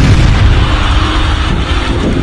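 A loud, deep boom-like rumble that hits suddenly and carries on, with music faint underneath.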